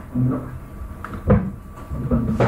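A short stretch of voice near the start, then a single dull knock a little over a second in.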